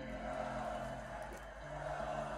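Live concert audio playing quietly: music with sustained low notes under a crowd at a festival show.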